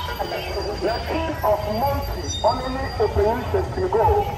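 A high-pitched voice gliding up and down in pitch in short phrases, over a steady low background rumble.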